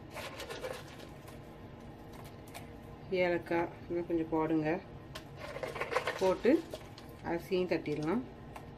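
A person speaking in short phrases, with a few light clicks between them.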